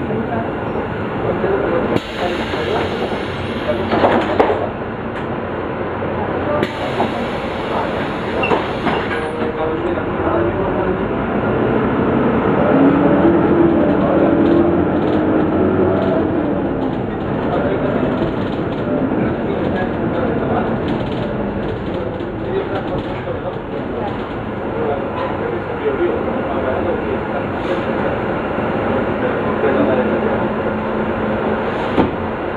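Cabin noise inside a moving Caio Mondego LA articulated bus on a Volvo B9 Salf chassis: the engine, tyres and road run steadily with rattles and a few knocks from the body, growing louder around the middle.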